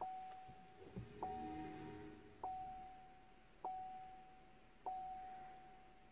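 Chevrolet Bolt EV's electronic chime: a single pitched chime repeating five times about every 1.2 seconds, each one fading before the next, with a brief cluster of lower tones after the first chime, as the car powers on.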